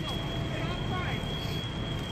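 Steady low rumble of fire apparatus running at a working fire, with a constant high-pitched tone over it and faint distant voices.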